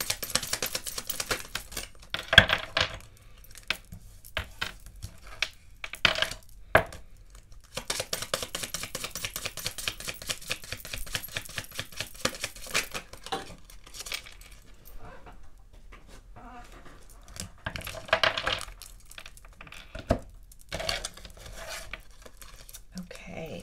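A deck of Kipper oracle cards being shuffled by hand: stretches of rapid, dense card flicking, with a few sharp single clicks between as cards are handled and set on the table.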